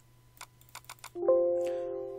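A few light mouse clicks, then about a second in a computer alert chime: several steady tones struck together that ring on and fade slowly.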